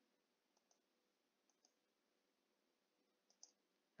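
Near silence with a few very faint computer mouse clicks, in pairs of press and release: one pair about half a second in, one near the middle and one near the end.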